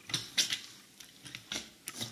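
Gunge-covered sneakers shifting in a layer of thick slime, giving a series of short, wet, sticky squelches and clicks. The loudest comes about half a second in.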